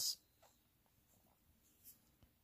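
Near silence with faint scratching of a metal crochet hook being worked through yarn, and a brief faint hiss near the end.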